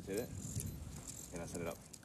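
Faint, indistinct voices, twice, over low steady outdoor background noise.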